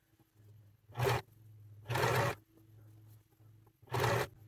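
Domestic sewing machine stitching a zigzag seam through knit fabric in three short bursts, each well under half a second, over a low steady hum.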